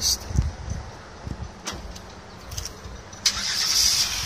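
A 2011 Chevrolet Camaro running at idle, heard as a low, uneven rumble from its customized wide-mouth exhaust.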